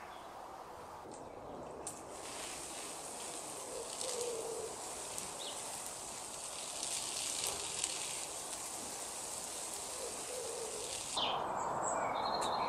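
Garden hose spray nozzle watering a raised vegetable bed: a steady hiss of spray that starts about two seconds in and stops shortly before the end. Low bird coos sound twice behind it.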